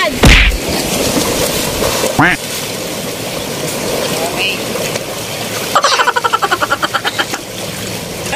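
Shallow sea water washing and splashing around a person wading among rocks. A sudden loud burst comes just after the start, voices call out, and a quick run of rapid vocal pulses comes around six to seven seconds in.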